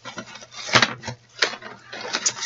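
Hands handling purchased items on a table: a few light knocks and scuffs as things are moved and set down.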